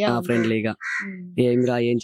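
A man talking, broken about a second in by a single short crow caw.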